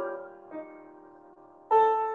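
Piano music generated by the Music Transformer deep-learning model. A held chord dies away, a soft single note sounds about half a second in, and after a short pause a new chord is struck near the end.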